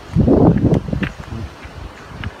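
Rumbling noise on the phone's microphone, loud for about a second near the start and then fading to faint background.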